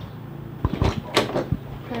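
A door being opened: a quick run of sharp clicks and knocks from the latch and door, starting a little after halfway through.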